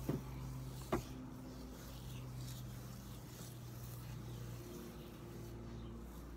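Faint strokes of a comb drawn through wet curly hair, with a sharp click about a second in, over a steady low hum.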